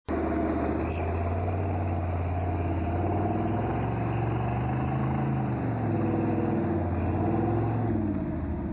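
Engine of a lifted off-road 4x4 on big mud tyres running hard under load as it churns through deep mud. The engine pitch climbs and then drops back around the middle.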